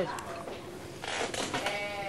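A person's voice making a drawn-out, slightly wavering vocal sound that starts about a second in and is held to the end.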